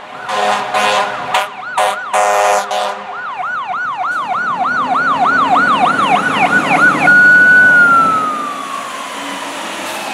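Fire truck's air horn giving a string of short blasts over its siren in the first three seconds. The electronic siren then yelps rapidly until about seven seconds in, switches to a steady wail and slowly falls in pitch.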